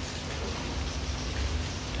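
Steady background hiss with a low rumble and no distinct events: outdoor room tone in a pause between speech.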